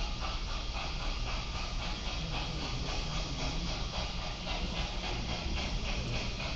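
Steam locomotive under way, a steady hiss with a quick, even beat of exhaust, heard as a film soundtrack played through a room's speakers. The locomotive is the Cotton Belt 819, a 4-8-4 steam engine running on a mainline.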